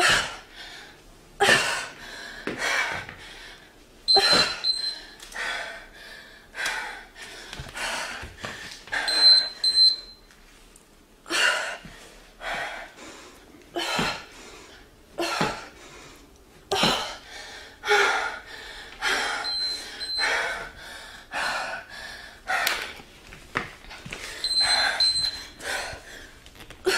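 A woman breathing hard and gasping during high-intensity interval exercise, one sharp breath about every second. A short high electronic beep sounds in quick pairs four times.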